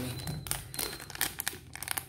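Clear plastic bag crinkling as hands pull it out of a cardboard box and handle it: a string of short, irregular crackles.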